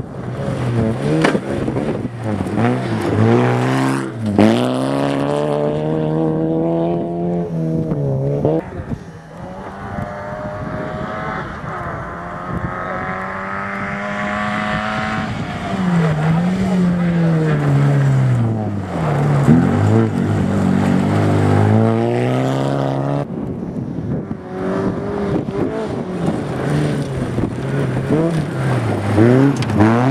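Several rally cars passing in turn on a gravel stage, their engines revving hard, then dropping sharply on each lift and gear change before climbing again.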